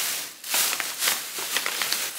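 Packaging and a shopping bag being handled, rustling and crinkling in a continuous crackly hiss with small clicks, dropping off briefly about half a second in.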